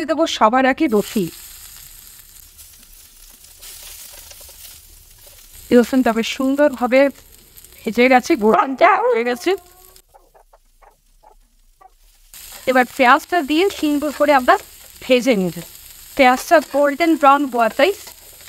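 Food frying in hot mustard oil in a pan, a steady sizzling hiss, with stirring. A voice comes in over it in several short stretches.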